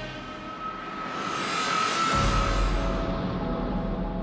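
Cinematic soundtrack music: a swelling whoosh with a held high note builds up, then breaks into a deep bass hit about halfway through that carries on.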